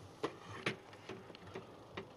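Light clicks and ticks of a Technics SL-PG300 CD player's plastic drawer mechanism being moved by hand: two sharper clicks in the first second, then a few faint ticks.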